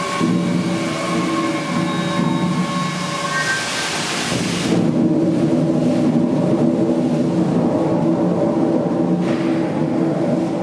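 The River Don Engine, a 12,000 hp three-cylinder steam engine, running with a loud, steady rumble. A high hiss rises over the first few seconds and cuts off suddenly about five seconds in, leaving a heavier rumble.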